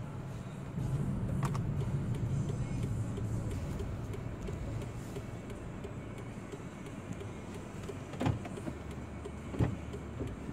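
Car cabin noise: a steady low engine and road hum, stronger for the first few seconds and then easing off. A couple of short knocks or clicks come near the end.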